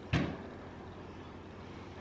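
A single brief thump just after the start, then quiet steady room tone.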